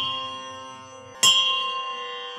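A bell struck and left to ring: the tone from a strike just before rings down, and a second strike a little over a second in rings out and fades slowly.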